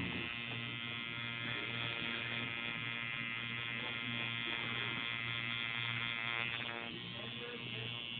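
Electric tattoo machine buzzing steadily as the needle works into skin. About seven seconds in the buzz becomes slightly quieter and less sharp.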